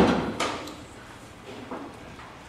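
Knocks and handling at a small table on a stage: a thump right at the start that fades out, a sharper click about half a second in, then faint handling noises.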